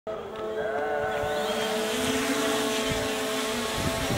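Electric lift rotors of a fixed-wing VTOL drone spinning up for a vertical takeoff: a steady whine of several pitches that steps up in pitch about two seconds in.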